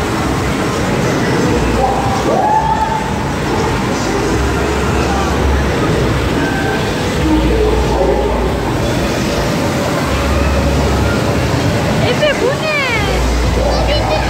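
Falling water of an indoor fountain, a curtain of water pouring into a round pool, splashing steadily under the busy din of voices in an arcade. A warbling electronic tone sweeps up and down near the end.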